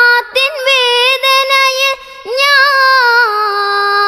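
A child singing a Malayalam Islamic song solo, with no instruments heard. Short ornamented phrases come first, then a long note held with a wavering ornament from about halfway.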